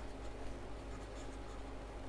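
Faint scratching of a stylus writing on a pen tablet, over a low steady hum.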